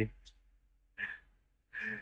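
A man's voice trails off at the start, then quiet with two short, faint breaths or sighs, one about a second in and one near the end.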